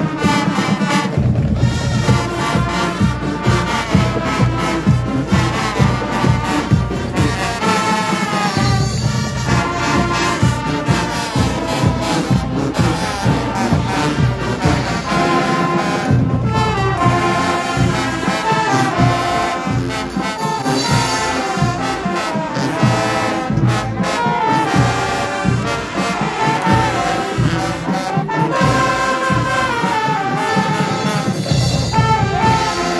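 School marching band playing live: a brass melody over a steady beat, continuous and loud.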